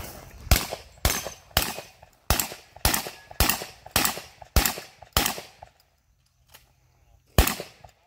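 Pistol fired in a steady string of nine shots about half a second apart. After a pause of about two seconds, one more shot comes near the end.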